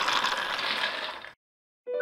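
A steady hissing wash of noise fades and then cuts off abruptly to dead silence about a second and a half in. After a short gap, a held music chord begins near the end.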